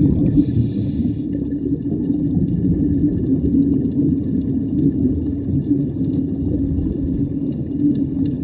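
Underwater ambient noise: a steady, muffled low rumble of moving water, with a brief faint hiss about half a second in.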